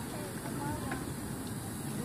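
A faint, distant voice over a steady outdoor background hiss.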